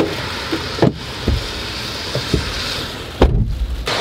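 Rain pattering steadily on a car, heard from inside the cabin, with a few knocks and a heavy thump about three seconds in.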